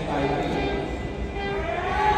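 Low, steady rumble of track bicycles racing on the velodrome's wooden boards, with voices in the hall over it.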